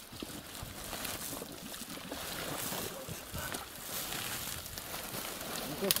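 Steady rush of meltwater pouring through a breach in an earthen pond dam, with faint voices and some wind on the microphone.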